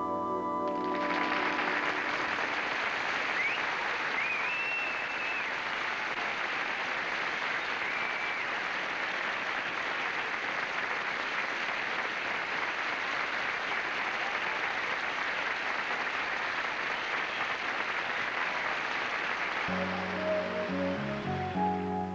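Studio audience applauding after a ballad ends, with a few whistles early on, for about eighteen seconds. The song's last held notes cut off about a second in, and a guitar starts a new song near the end.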